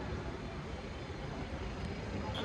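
Steady background hum of a large indoor shopping mall, with no distinct voices standing out.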